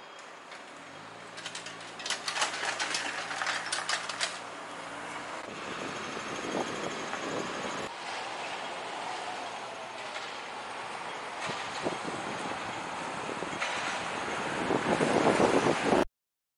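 Street traffic: a vehicle engine hums steadily with a rapid rattling clatter for the first few seconds, then the noise of passing traffic builds and is loudest near the end.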